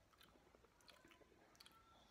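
Near silence with a few faint, soft clicks of mouth sounds as whisky is held and worked on the palate.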